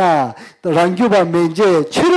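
Only speech: a man talking steadily, with a brief pause about half a second in.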